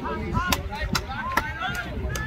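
Distant shouting and calling voices across a field, with four sharp claps evenly spaced about half a second apart.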